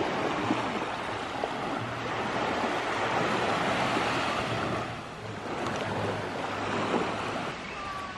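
Small sea waves washing onto a sandy beach, a steady surf that swells in the middle and eases off.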